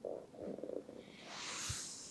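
A person's stomach gurgling twice in quick succession, low and short, followed by a soft hiss that swells and fades with a faint low thump.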